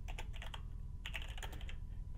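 Computer keyboard typing: two runs of quick key clicks with a brief pause between them.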